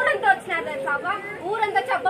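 Speech: a woman talking, with no other sound standing out.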